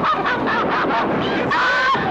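Two women screaming and shrieking on a thrill ride: many short, high yelps that glide up and down, overlapping one another, over a steady rush of noise.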